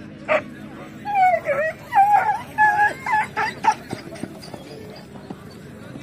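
Greyhounds whining and yelping in high, wavering cries for a few seconds, excited and straining to run as they are held at the start line. The cries fade out in the second half.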